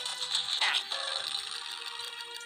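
Cartoon mechanical sound effect of a lever pulled and a trapdoor opening onto gears: a dense clattering rattle with a brief falling sweep about half a second in, over background music.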